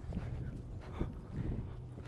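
Horse cantering on a sand arena: soft, muffled hoofbeats at irregular spacing, with a steady low hum underneath.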